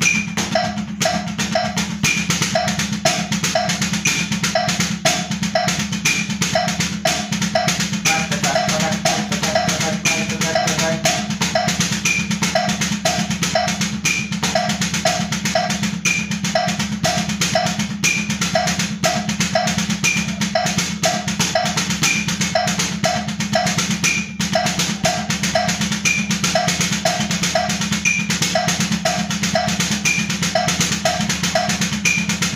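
Drumsticks striking a rubber practice pad in a fast, steady stream of strokes, the sticking exercise right, left, right-right, left, right-right, left played at 120 BPM. A backing beat or click repeats evenly underneath.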